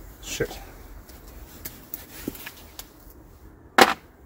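Faint handling sounds, then one short, sharp knock near the end that is much the loudest sound.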